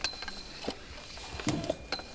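Scattered light clicks and knocks of gear being handled at loaded motorcycles, with a few sharper ones about a third of the way in and again near the end.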